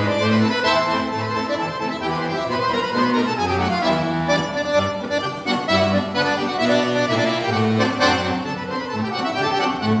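Solo piano accordion playing an upbeat tune over a steady, alternating bass-and-chord accompaniment, with a quick descending run in the treble about three seconds in.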